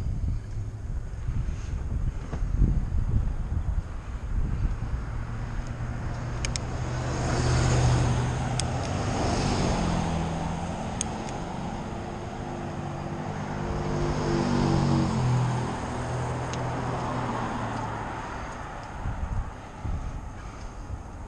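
Wind rumbling on the microphone while riding an electric bike along a roadside bike lane, with a motor vehicle's engine passing in the middle, its note rising and falling. A few sharp clicks sound midway.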